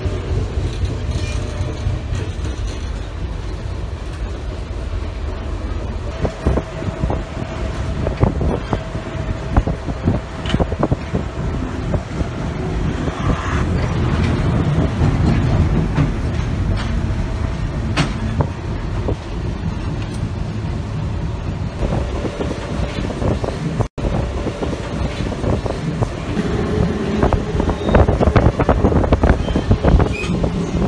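Passenger train running, heard from inside the carriage: a steady low rumble with constant rail clatter and knocks, growing louder near the end.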